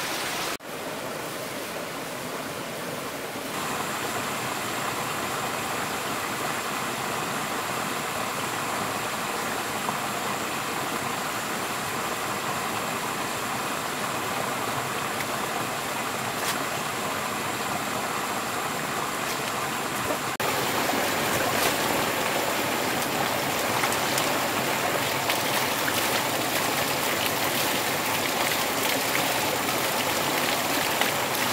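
Steady rushing of running water, changing abruptly in level and tone about half a second in, again a few seconds in, and again about two-thirds of the way through. A thin steady high whine sits over the middle stretch.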